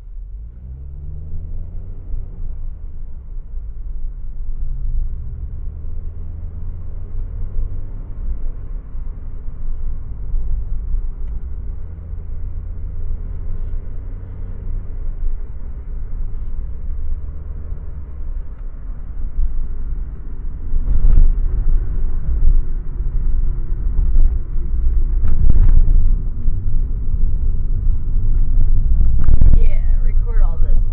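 Car engine and road noise heard from inside the cabin: the engine note rises as the car pulls away, then settles into a steady low rumble of tyres on the road, which grows louder and rougher for the last third.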